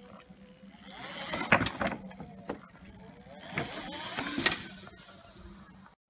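Electric motor of an OSET 24.0 electric trials bike whining up and back down in two short bursts of throttle, the second about two seconds after the first. Sharp knocks come in and between the bursts as the tyres strike the wooden pallets.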